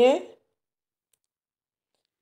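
A woman's narrating voice trailing off in the first moment, then dead silence.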